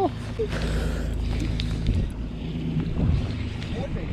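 Wind rumbling on the microphone over a steady low hum, on open water.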